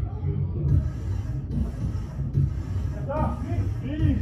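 Low rumbling background noise with indistinct voices, and a voice calling out clearly near the end.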